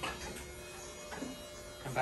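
Low steady electrical hum of the x-ray room equipment, faint, with no distinct mechanical event.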